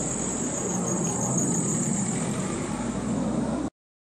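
Distant jet aircraft rumble heard outdoors, steady, with a constant high-pitched hiss above it. The sound cuts off suddenly near the end.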